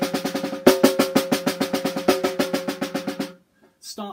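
Snare drum played with a loosely gripped stick that bounces freely many times off the head, each run of bounces starting loud and fading. A fresh stroke about two-thirds of a second in starts a new run of rapid, evenly spaced bounces that dies away a little after three seconds, with the drum ringing under each hit.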